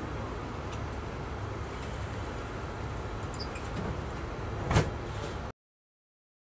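Intercity coach bus idling at a stop, heard from inside the cabin as a steady low rumble with faint rattles. A single loud thud comes near the end, just before the sound cuts off suddenly.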